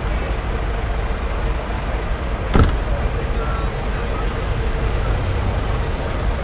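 Steady rumble of idling vehicle engines and road traffic, with a single sharp knock about two and a half seconds in.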